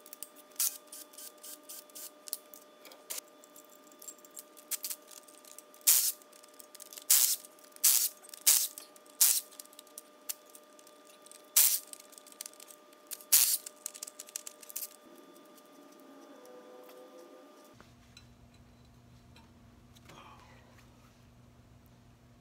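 Short, irregular bursts of ratchet noise, about ten in all, as bolts are loosened on a GM 3800 V6 cylinder head, then a faint steady hum after a cut near the end.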